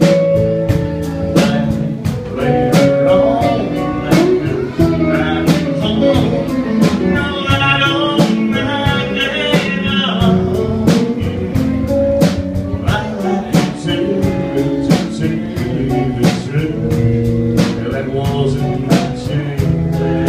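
Live country band playing an instrumental break: electric guitars over a steady drum beat, with a harmonica taking a wavering lead line through the vocal microphone around the middle.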